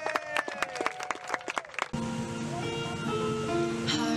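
Wedding guests clapping and cheering with whoops after the couple's kiss, then recessional music starts abruptly about two seconds in.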